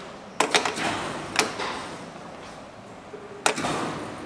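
Sharp mechanical clicks from the elevator's landing call button and its metal panel as it is pressed: a quick cluster about half a second in, a single click a second later, and another near the end, after which the call light is lit.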